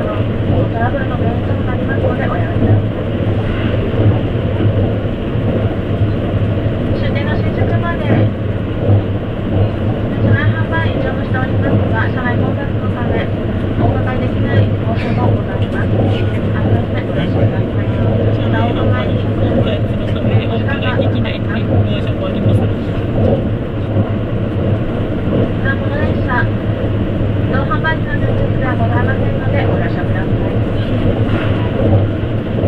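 Steady running noise inside a carriage of a JR East E257 series limited express electric train at speed: a constant low hum over the rumble of the wheels on the rails.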